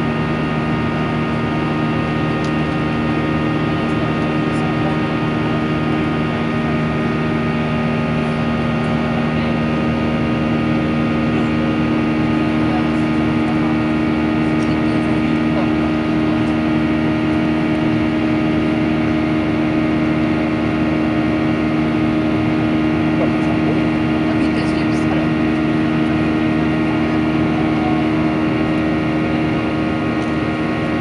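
Inside the cabin of a Boeing 737-800 climbing after takeoff: the steady drone of its CFM56 jet engines, with several steady hum tones over a constant rush of air. One of the hum tones grows stronger about a third of the way through.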